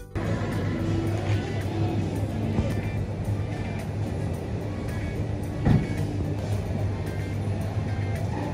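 Wire shopping trolley rolling and rattling over a tiled supermarket floor, a steady rumble with a single sharp knock a little past halfway, with music playing over it.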